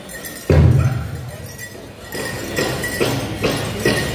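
Large powwow drum played by a drum group at the start of a song: one heavy beat about half a second in, then steady beats a little over two a second from about two seconds in.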